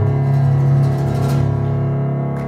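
Acoustic guitar played live, chords ringing and held over a steady low note.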